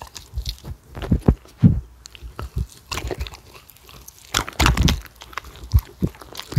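Shetland sheepdogs chewing and biting pieces of pan-fried jeon, close-miked: irregular crunchy, wet chomps, loudest about a second in and again near the end.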